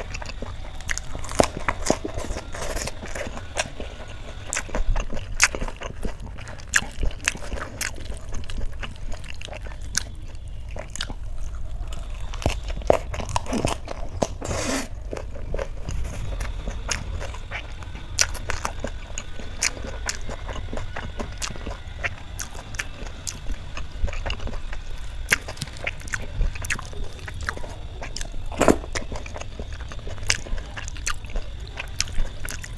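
Close-miked eating by hand: crisp bites into lettuce-wrapped rice and chewing, with frequent sharp crunches and wet squelches of fingers mixing rice into dal.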